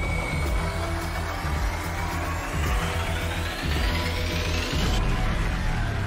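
Dramatic suspense music: a pulsing bass bed under a high synth sweep that rises steadily and cuts off abruptly about five seconds in. It is the tension build before an eliminated contestant's name is announced.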